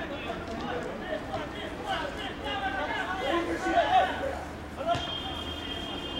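Football players' voices calling and shouting across the pitch, loudest a little past the middle. A sharp knock comes just before the five-second mark, followed by a thin, steady high tone lasting over a second.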